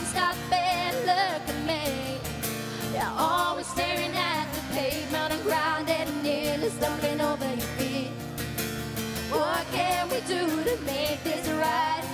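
Two female voices singing together with vibrato and sliding vocal runs, over acoustic guitar accompaniment.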